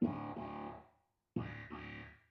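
Clavinet, recorded through a room microphone, playing two short stabs a little over a second apart, each starting sharply and dying away within about a second.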